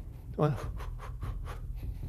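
Faint quick swishes of clothing, about five a second, from rapid Wing Chun chain punches, with a steady low hum underneath.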